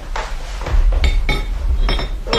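Clattering of objects being lifted down from a shelf: a series of about five knocks and clinks, some with a short ringing tone, over a low rumble.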